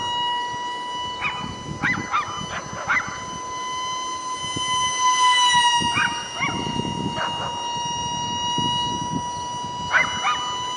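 Ultra-micro RC jet's electric ducted fan giving a steady high-pitched whine in flight, dipping slightly in pitch about halfway through. Short sharp calls cut in over it several times.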